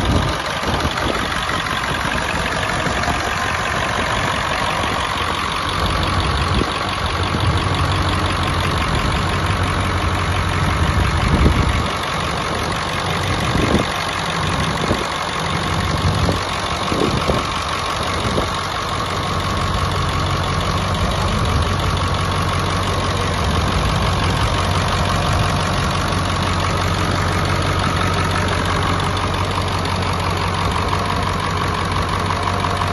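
Navistar International T444E 7.3-litre V8 turbo diesel idling steadily, with a few brief low thumps near the middle.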